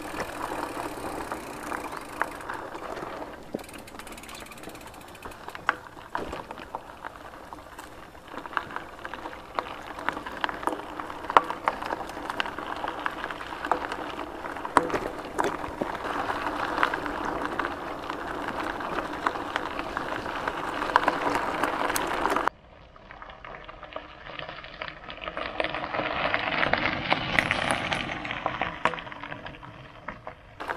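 Bicycle tyres rolling over a gravel track, a steady crunch with frequent small clicks and rattles from the bike. About three-quarters of the way through the sound cuts off suddenly and is replaced by a bike on gravel that grows louder as it passes and then fades away.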